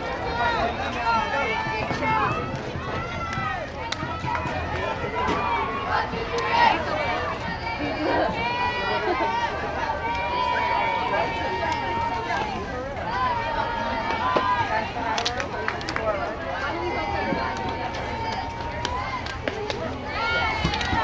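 Many overlapping voices of softball players and spectators talking and calling out across the field, with a few long drawn-out calls.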